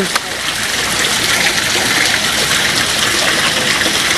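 Water falling and splashing into a fish pond, a steady, unbroken rush.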